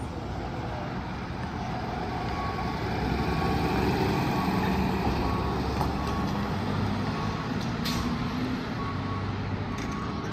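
An ambulance driving past without a siren: its engine and tyres rumble louder, are loudest about four seconds in, then fade as it pulls away. A faint short beep repeats about every three quarters of a second through most of it.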